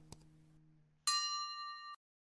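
Subscribe-button animation sound effects: a sharp mouse click, then about a second in a bright notification bell chime that rings for nearly a second and cuts off sharply. The tail of the closing guitar music fades out beneath the click.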